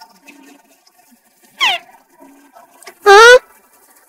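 A cartoon character's voice: a short cry that falls in pitch about one and a half seconds in, then a loud questioning "hả?" that rises in pitch near the end.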